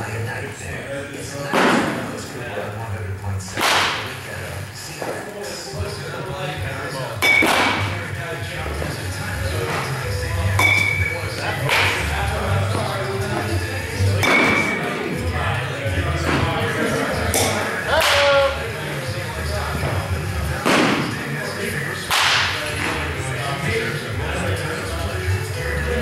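A youth metal bat hitting baseballs off a batting tee: about eight sharp cracks a few seconds apart, some with a short ringing ping, echoing in a large indoor batting cage.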